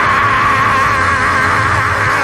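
A preacher's voice holding one long, wavering sung note on 'my', with steady accompanying music underneath.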